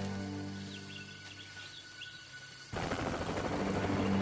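Sustained dramatic score fading down, then a helicopter's rapid rotor chop cutting in suddenly about two and a half seconds in.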